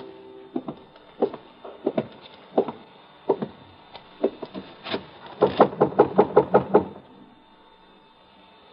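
Radio-drama sound effects: spaced footsteps, then a quick, loud run of about ten knocks on a door, lasting just over a second, starting about five and a half seconds in.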